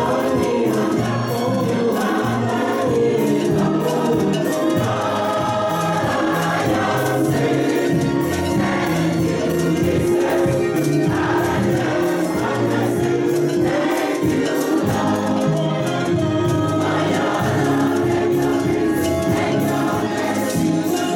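Congregation and choir singing a gospel praise-and-worship song together, over instrumental accompaniment with a steady beat.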